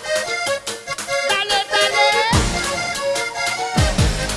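Live band playing an instrumental funaná intro: a quick accordion melody over busy percussion, with two deep falling sweeps about halfway through and near the end.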